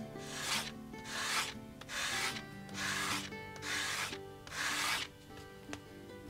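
A small strip of leather rubbed back and forth on a sheet of sandpaper to sand its edge, six rasping strokes about one a second that stop about five seconds in.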